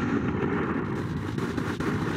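A steady low rumbling noise with a fine crackle: a sound effect laid under a section title, rumbling like distant explosions.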